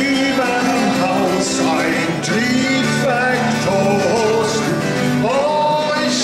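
A man singing a German folk song, accompanying himself on a strummed twelve-string acoustic guitar, with held, gliding sung notes over steady chords.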